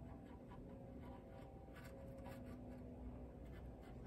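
Faint scratching of a small paintbrush dabbing acrylic paint onto a textured sculpted surface, a few soft strokes over a faint steady hum.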